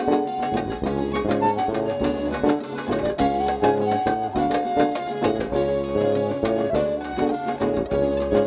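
Live traditional Italian folk band playing an instrumental passage: a held lead melody over acoustic guitars, electric bass and a steady beat on a hand-held frame drum.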